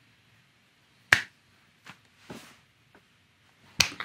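A high five: two hands slap together once with a sharp crack about a second in. A few faint knocks and rustles follow, and another sharp slap comes just before the end.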